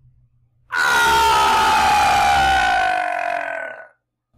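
A person screaming one long, drawn-out "ahhh" that starts about a second in, lasts about three seconds and falls slowly in pitch before cutting off.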